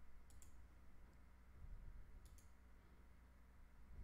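Near silence with a low steady hum, broken by two faint pairs of clicks, one about a third of a second in and one just past two seconds, from the computer at the desk.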